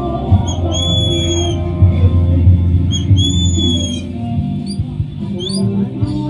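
A bird calling: two drawn-out whistled notes, then several quick rising chirps near the end, over steady background music.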